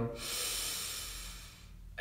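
A man's deep breath in, a breathy rush of air that lasts about a second and a half and fades away: one inhale of a paced deep-breathing exercise.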